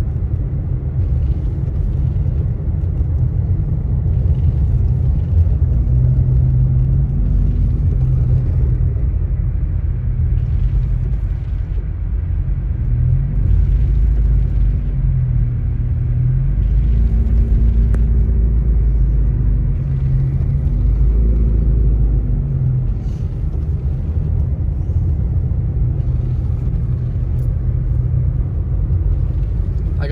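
Car driving on a snow-covered road, heard from inside the cabin: a steady low rumble of engine and tyres, with the engine note rising and falling through the middle.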